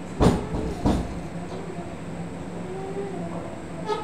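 Two dull knocks, about two-thirds of a second apart, over a steady low hum.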